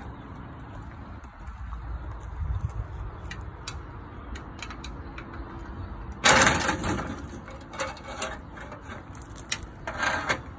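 Metal clicks and knocks from a folding metal step ladder being handled and adjusted at its foot, with one loud clattering clank about six seconds in and a few smaller knocks near the end.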